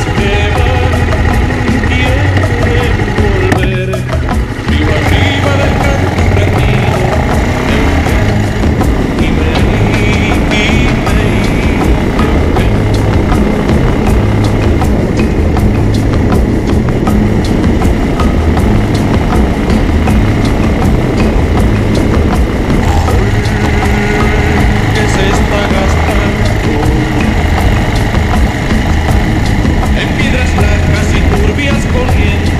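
Bajaj Avenger 220 single-cylinder motorcycle engine running under way, heard from a camera mounted low beside the engine, with background music playing loudly over it.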